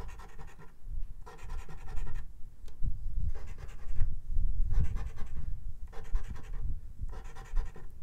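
A scratch-off lottery ticket being scratched with a scratch coin: a series of short scraping strokes, a little faster than one a second, each with a faint squeak.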